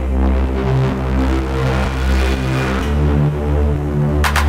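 Techno track in a DJ mix: a heavy sustained bass line under stepping synth tones, with a hissing swell that builds and drops away about three seconds in.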